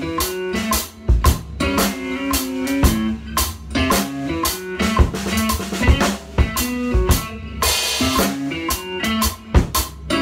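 Acoustic drum kit (Yamaha Recording Custom shells, Tama snare, Meinl Byzance cymbals) played in a steady groove of bass drum, snare and cymbals, over a pop backing track with guitar. It is recorded through a phone's microphone.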